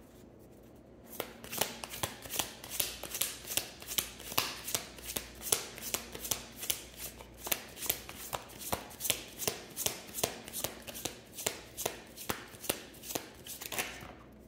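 A deck of tarot cards being shuffled by hand: after about a second of quiet, a steady run of crisp card slaps, about three a second.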